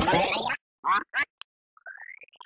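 Effects-warped cartoon voice that cuts off abruptly about half a second in. Two short squawk-like bursts follow, then a thin tone gliding upward near the end.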